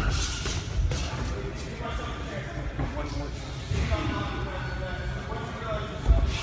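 Indistinct voices over background music, with a few dull thuds of strikes landing on a held strike shield.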